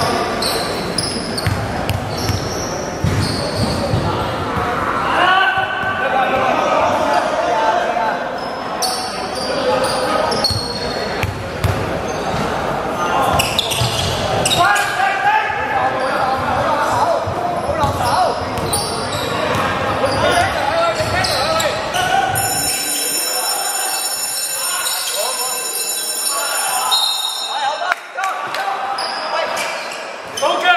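A basketball bouncing on a hardwood gym floor in a large, reverberant hall, with players' voices calling out and short high squeaks throughout.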